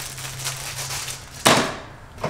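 Packaging rustling as it is handled, then one sharp knock about one and a half seconds in that dies away quickly.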